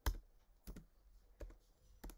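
Computer keyboard keys clicking: a few separate, unhurried keystrokes, the first the loudest.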